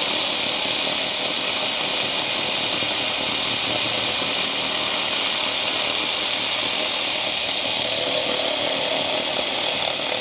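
Everlast RedSabre 301 pulse laser cleaner firing on a cylinder head, a steady high hiss as it strips carbon off the metal, with a fume extractor running alongside.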